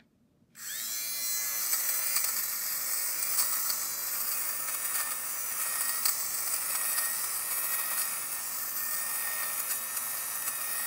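Electric fabric shaver switched on about half a second in, its small motor rising briefly in pitch and then running at a steady high whine. Over it a scratchy buzz with many small clicks as its spinning blades shave pills off a knit sweater.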